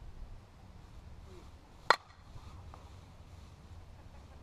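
A 2015 Miken Freak 52 composite slowpitch softball bat hitting a 44/375 softball: a single sharp crack about two seconds in. The bat is still being broken in, with about 200 swings on it.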